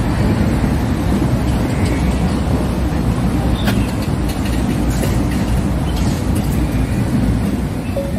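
Loud, steady rumble of wind buffeting a handheld phone's microphone outdoors, with a few faint clicks.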